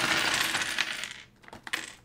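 Mechanical keyboard switches, a few coins and small plastic figures poured out of a bag onto a hard desktop: a dense clatter that thins out after about a second, with a few last clicks.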